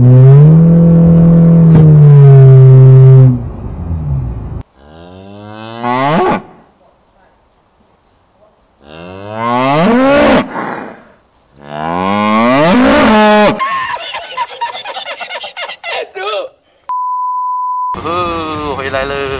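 A CVT car's engine droning at a steady pitch for about three seconds, then a cow mooing three times, each call a long pitched bellow that bends in pitch, and a short steady beep near the end. The engine drone and the moos are set side by side as a joke: a CVT car under acceleration holds one engine note that sounds like a cow mooing.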